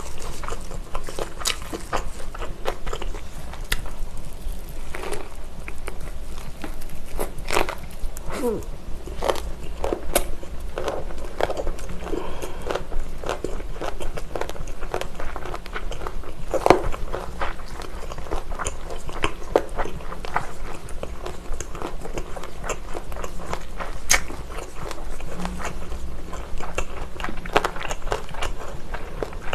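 Close-miked chewing of a thick gimbap roll filled with pork belly, spicy fire noodles, lettuce and a whole cheongyang chili. Chewing goes on throughout as many irregular small wet clicks and crunches.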